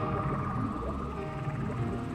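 Ambient relaxation music mixed with whale calls: a held high tone over slow, gliding low moans.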